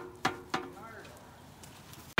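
Galvanized metal sap bucket knocking and clanking about three times in quick succession near the start, each knock ringing briefly, as it is handled after being emptied.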